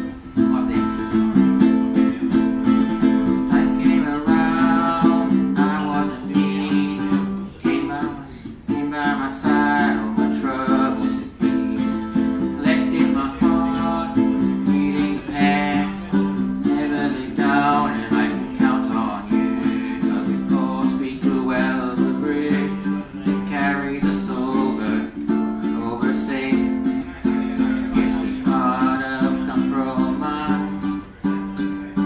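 Live solo ukulele, plucked and strummed in a steady flow of chords, with a voice singing phrases over it that come and go every few seconds.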